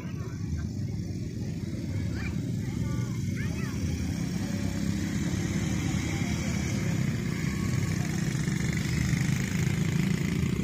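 Quad bike (ATV) engine running steadily, growing a little louder towards the end, with people's voices in the background.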